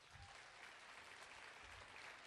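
Faint audience applause.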